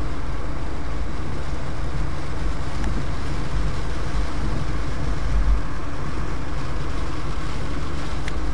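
Heavy rain in a downpour: a steady hiss with a low rumble underneath.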